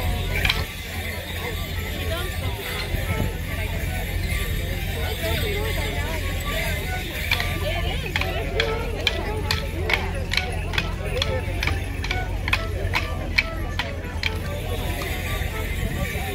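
Morris dancers' wooden sticks clacking together in time with a dance tune, with leg bells jingling. The stick strikes come in a regular run of about two a second from roughly halfway through.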